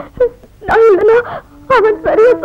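A woman crying, in short wavering wails broken by pauses, the longest and loudest about a second in.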